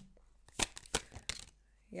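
Tarot cards handled in the hands: a few soft, sparse clicks of cards being shuffled or drawn from the deck.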